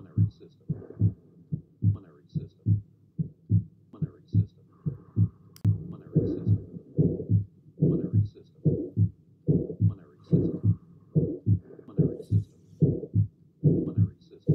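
Heart sounds heard through a stethoscope: a regular lub-dub heartbeat, a little over one beat a second, with a whooshing murmur between the beats. This is an auscultation sample of aortic valve stenosis, whose typical sign is a systolic ejection murmur.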